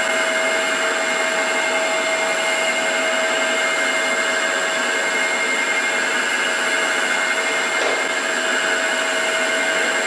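Milling machine spindle running steadily with a constant whine as an end mill cuts power slots into a cast-iron flathead Ford engine block, the table fed by hand-cranked handles.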